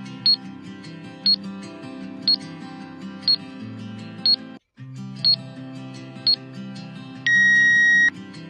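Quiz countdown timer sound effect over background music: a short high beep once a second, then a loud, steady electronic buzzer tone lasting about a second near the end as the timer reaches zero, signalling time is up. The music cuts out briefly about halfway through.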